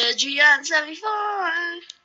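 A high, child-like voice singing a short wordless tune in quick phrases that slide between notes, then one longer held note that fades just before the end.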